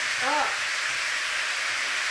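Stir-fry sizzling steadily in a hot wok, with the hiss of steam from Shaoxing rice wine just poured around the wok's edge.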